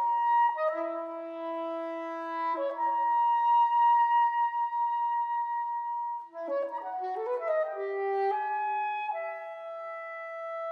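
Solo soprano saxophone playing a contemporary piece: a few notes, then one long held high note, a sudden quick flurry of short notes about six and a half seconds in, and longer held notes after it.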